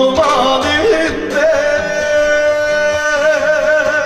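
A singer's amplified voice, sung into a microphone over backing music, sliding through a phrase and then holding one long note with a steady vibrato.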